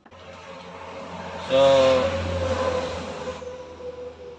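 Engine and road noise of a passing motor vehicle, growing louder over the first second and a half and then slowly fading.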